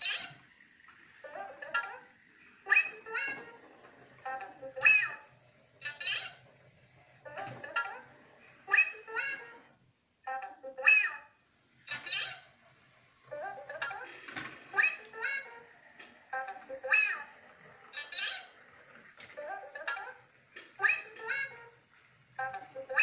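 Sound clips from the LEGO WeDo 2.0 coding app, played through the tablet's speaker as the programmed rover runs: short voice-like calls about one a second, with a brief break about ten seconds in.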